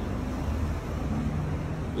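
Steady low rumble of background noise, like distant traffic or machinery, with no distinct event standing out.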